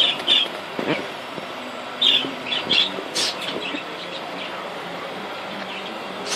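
Birds chirping in short, high calls, several in quick succession, over a steady background hiss.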